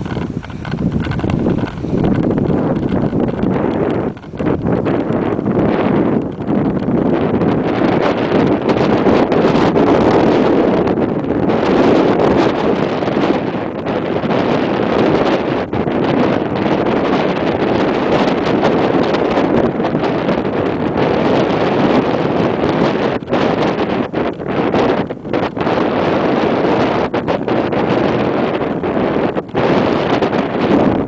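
Wind blowing across a hand-held phone's microphone as it is carried along on a moving bicycle. The result is a loud, steady rushing roar with a few brief dropouts.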